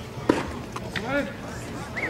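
A baseball pitch popping into the catcher's leather mitt: one sharp, loud pop about a third of a second in. Spectators' voices murmur around it.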